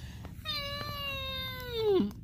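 A single long, high-pitched, meow-like cry that starts about half a second in, holds nearly steady, then drops in pitch and swells just before it ends.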